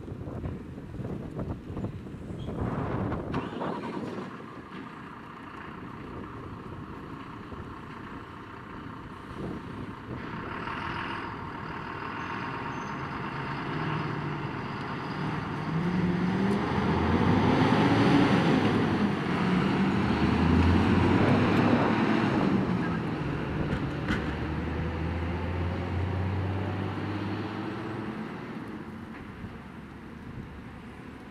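Diesel engine of a MAN TGM fire engine pulling away and accelerating. Its note rises to a peak, dips, rises again through the gears, then settles into a low steady rumble that fades as the truck drives off.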